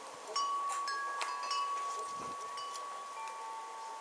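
Chimes ringing: a few struck metal notes that ring on and overlap, the strongest strike about a third of a second in, then a lower note joining about three seconds in.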